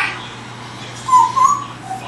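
African grey parrot vocalizing: a short whistled note about a second in that rises slightly and wavers, followed by a brief lower note near the end, just after the tail of a louder call at the start.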